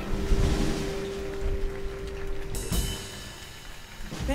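Jazz combo closing a tune: a sustained final chord over drum rolls and cymbal wash, ending with a last hit near three seconds in and then dying away.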